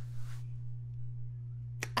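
A pause in a woman's speech, filled by a steady low electrical hum. A short breath sound comes at the start, and speech starts again near the end.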